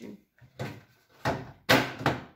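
Plastic parts of a split air conditioner's indoor unit knocking and scraping as the cleaned filters and front panel are fitted back into place. There are three short sounds, the loudest near the end.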